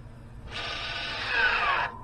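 Electric parking-brake actuator motor on a new rear brake caliper of a 2013 Range Rover L405 whirring as the handbrake is applied. It starts about half a second in, its whine falls in pitch, and it cuts off sharply near the end. The actuator is working properly and in sync.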